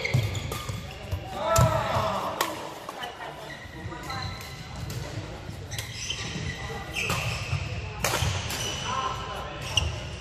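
Badminton rackets striking a shuttlecock in a doubles rally, a string of sharp hits echoing in a large hall, mixed with sneakers squeaking on the court floor and players' voices.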